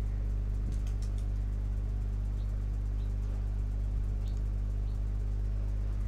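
Steady low electrical hum on the recording, with a few faint clicks.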